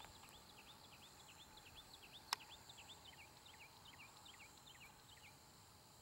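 Near silence with a faint bird twittering: a quick run of short high chirps, about four a second, that stops shortly before the end. A single sharp click about two seconds in.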